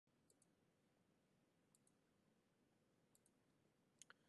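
Near silence: faint room tone with three very faint double clicks, evenly spaced about a second and a half apart.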